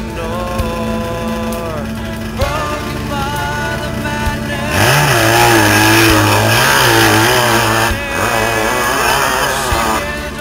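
Background music playing, then about five seconds in a dirt bike engine suddenly revs hard and is held high for about three seconds, the pitch wavering, before easing off but still running.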